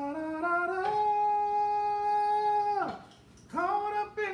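A person singing without words, climbing in small steps to one long held note that drops off near three seconds in. Another sung phrase starts just before the end.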